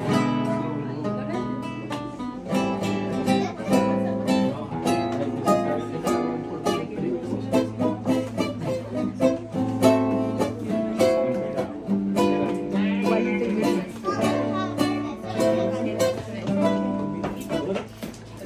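Acoustic guitars playing together, plucked and strummed chords, with a man's voice singing over them.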